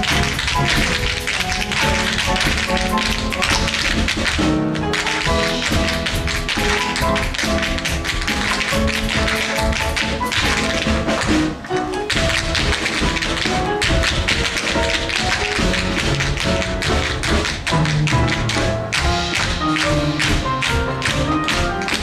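Ensemble tap dancing: many tap shoes striking a stage floor in fast, dense rhythms over a show-tune band accompaniment.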